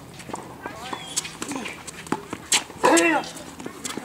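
Tennis rally on a hard court: scattered sharp knocks of racket strings hitting the ball and shoes on the court. A loud voice calls out about three seconds in.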